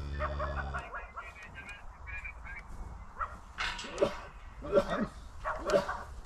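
A cow lows once at the start, then a dog barks repeatedly, short sharp barks about one a second, while cattle are driven along a lane.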